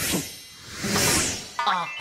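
Cartoon selection sound effect: a shimmering whoosh, with a short burst at the start and a longer swell that peaks about a second in and fades, as the bunny token is chosen. A voice starts to speak near the end.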